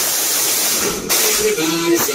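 A van's speaker-packed car-audio system playing a sung hip-hop/party track at high volume. The first second is dominated by a loud hiss-like noise, and the music and vocals come through clearly from about a second in.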